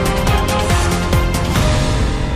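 Theme music of a TV channel's closing ident, loud, with a beat of sharp percussive hits over held notes.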